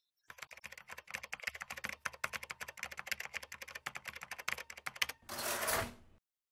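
Rapid, continuous typing on a computer keyboard, many key clicks a second. Near the end it gives way to a brief rushing noise of about half a second.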